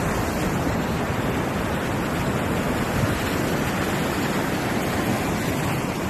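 Steady roar of wind and breaking surf, with strong wind buffeting the microphone.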